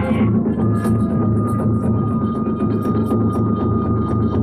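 Iwami kagura ensemble playing for a dance: a big drum beats a fast, steady rhythm under sharp clashes of small hand cymbals, while a bamboo flute holds one long high note from about half a second in.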